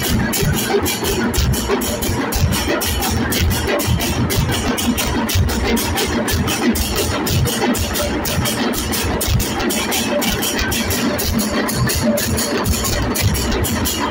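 Dhol and tasha drum ensemble playing a fast, unbroken rhythm, with large hand cymbals clashing on the beat.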